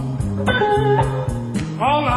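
Live blues band with a lead electric guitar playing sustained, string-bent notes over the band's steady low backing; a new, louder bent phrase starts near the end.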